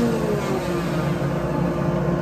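A rotary grinder running steadily as the ports of a Stihl 461 chainsaw cylinder are ground out.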